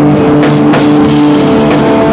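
Live rock band playing loud: distorted electric guitar and bass guitar holding notes over a drum kit, with cymbal hits several times a second.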